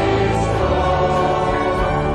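Choir singing a Dutch hymn in sustained, held chords.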